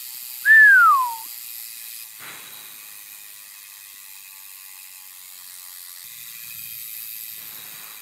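Mountain bike rear freehub ticking fast and steadily as the lifted rear wheel spins freely: no rubbing and no resistance from brakes or hub bearings. About half a second in, a single loud whistle falls in pitch over less than a second.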